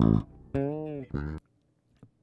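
Recorded electric bass guitar track playing back through a mixing console, with a narrow EQ cut taming the buzzing of its strings. The playback stops abruptly about one and a half seconds in.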